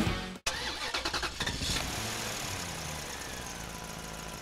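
A car engine cranking in quick pulses for about a second, then catching and running steadily, slowly fading away.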